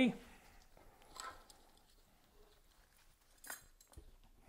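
Mostly near silence, broken by two brief, faint handling noises from the mold being moved, about a second in and again near the end.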